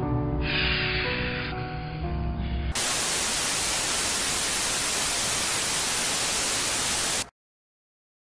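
Background music with sustained chords, abruptly replaced a little under three seconds in by TV static, a steady hiss that lasts about four and a half seconds and then cuts off suddenly into silence.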